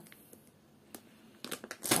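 A plastic bag of rolled oats rustling and crinkling as it is set down on the table, mostly in the last half second, after a faint click about a second in.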